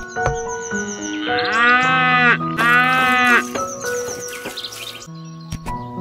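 Two drawn-out sheep bleats, about a second each and one right after the other, over light background music.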